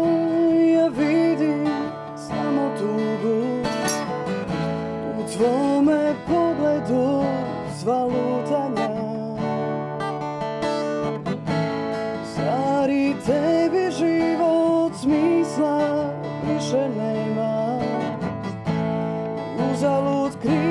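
A woman singing a slow song while strumming her own acoustic guitar.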